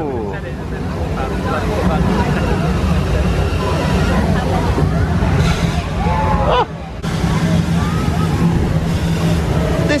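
Steady low rumble and rushing noise from the Rainforest Cafe's show volcano erupting with gas flames and steam, over crowd chatter. The sound drops briefly about two-thirds of the way in.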